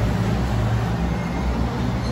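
Street traffic: a pickup truck driving past, its engine and tyres making a steady low sound.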